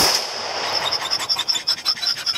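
A single AR-style rifle shot right at the start, a follow-up shot at a wounded wild boar, ringing out briefly through the woods. After it comes a rapid high chirping, several pulses a second.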